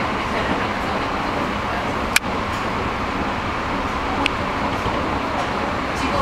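Steady running noise of a moving train heard from inside the carriage, with a sharp click about two seconds in and a fainter one about four seconds in.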